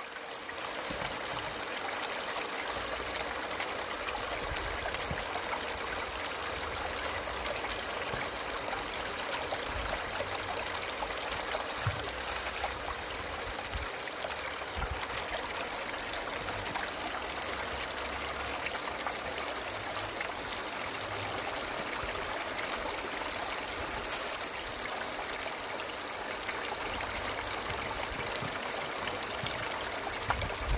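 Water from two 1100-gallon pumps rushing steadily down a 6-inch aluminium highbanker sluice over its mats and splashing into the tub below, with three brief louder moments along the way.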